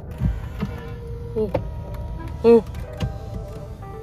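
Mercedes-Benz electric power seat motor running with a low, steady hum as the seat moves itself to a stored memory position after one press of the door-mounted memory button.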